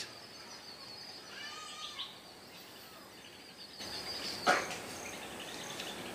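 Faint outdoor ambience with birds calling: a few short curved chirps about one and a half to two seconds in, over a steady high-pitched trill. A short soft sound near the middle stands out briefly.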